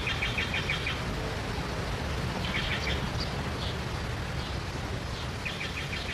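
Small songbirds chirping in quick trilled phrases, three short bouts, over a steady low background rumble.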